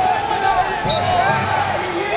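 Busy wrestling tournament hall: many people talking at once, with short squeaks of wrestling shoes on the mats and a sharp click about a second in.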